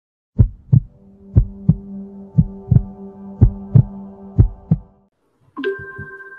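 Heartbeat sound effect: five double thumps, about one pair a second, over a steady low hum, stopping about five seconds in. A steady tone begins just before the end.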